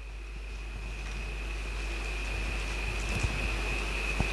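Steady low hum and hiss with a thin, high-pitched whine, slowly growing louder, and a couple of faint clicks near the end.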